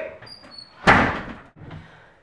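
A door slammed shut once, about a second in, with a short ringing tail as it dies away.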